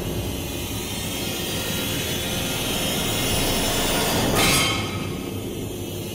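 Dramatic sound-effect background score: a sustained low rumbling drone, with a sharp whoosh about four and a half seconds in.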